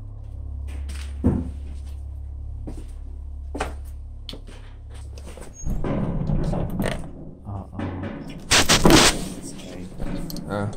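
Lever handle and latch of a heavy metal door being worked and pulled: a few sharp knocks, a stretch of rattling, then a loud metallic clank and scrape near the end.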